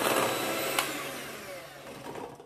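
Electric hand mixer running, its twin beaters whirring through ghee and powdered sugar in a glass bowl, with a couple of sharp ticks near the start. It is creaming the mixture until fluffy, and it grows fainter toward the end.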